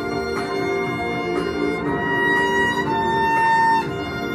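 Violin playing a pop melody over a recorded backing track with a steady beat. About halfway through the violin holds a long high note, then steps down to a slightly lower held note that stops just before the end.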